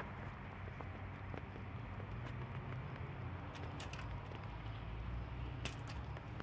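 Faint, scattered clicks and scrapes of a garden rake dragging through gravel, over a steady low hum.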